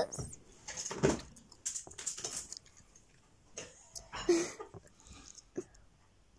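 A person's quiet, breathy vocal sounds: short breaths and small murmurs at irregular intervals, with no clear words.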